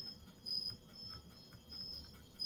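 Faint insect chirping, a high thin note pulsing on and off several times.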